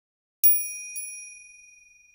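A small bell chime rings out, struck about half a second in, with a lighter second strike a moment later. It rings on at a high pitch and slowly fades, a transition chime between two stories.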